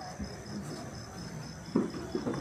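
A cricket chirping steadily in a pause between speech, a faint high pulsed chirp about four times a second. A brief voice sound comes near the end.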